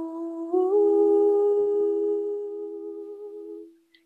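Crystal singing bowl ringing one steady tone as a wand circles its rim, joined about half a second in by a woman's voice singing a long held note in harmony just above it. The voice fades out near the end.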